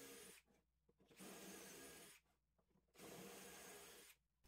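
Near silence: a faint hiss of room tone that cuts out to dead silence three times.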